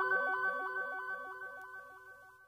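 Background music fading out: a quick repeating pattern of notes over two held high tones, getting steadily quieter and dying away near the end.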